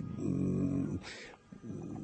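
A man's held hesitation sound, a drawn-out "ehh" lasting about a second on one steady pitch, followed by a short intake of breath.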